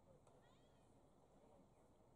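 Near silence, with faint distant voices calling across an open sports field, one short call about half a second in.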